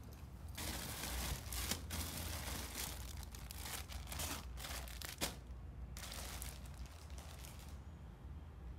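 Plastic candy packaging crinkling and crackling as a bag is handled, with a few sharper snaps. It starts about half a second in and eases off after about six seconds.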